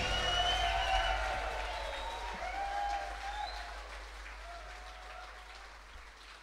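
Concert audience applauding, fading out steadily over about five seconds.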